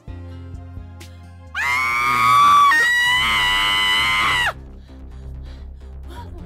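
A woman's loud scream, one long high-pitched cry held for about three seconds, starting a second and a half in and stepping higher in pitch about halfway through. Background music plays under it.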